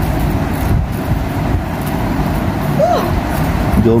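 A steady low background rumble, like a running motor or traffic, with a short rising-and-falling chirp about three seconds in.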